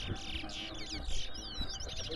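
Caged towa-towa finches (chestnut-bellied seed finches) singing: quick runs of high, sliding whistled notes and trills, one phrase after another.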